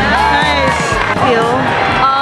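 Excited, high-pitched yelling from a girl's voice, with no clear words, over background music.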